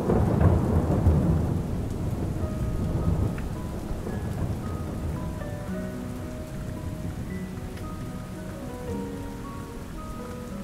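Steady heavy rain with a rolling thunder rumble that is loudest in the first few seconds and slowly fades. Soft, sparse background music notes come in over the rain after a couple of seconds.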